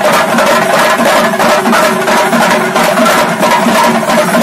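A large chenda melam ensemble: many Kerala chenda drums beaten with sticks together in a loud, fast, dense rhythm that runs on without a break.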